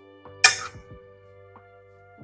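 A single sharp, loud clatter about half a second in, as the utensil stirring the teriyaki noodles strikes the side of the metal saucepan, over soft background music.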